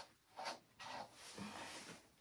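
A slicker brush stroking through a dog's thick, dense coat: a few faint, scratchy strokes.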